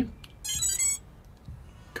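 TBS Oblivion FPV racing drone sounding its short power-up chime of high electronic tones, about half a second long, as its battery is plugged in.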